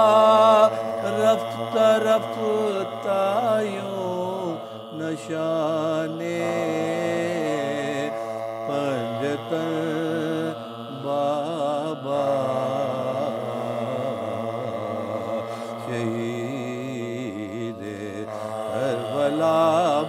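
Men's voices chanting a soz-o-marsiya, a Muharram lament, in slow, drawn-out melodic lines with no instruments.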